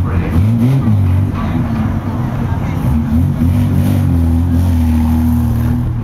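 Banger race car engines running, revved up and down and then settling to a steady idle for the last couple of seconds.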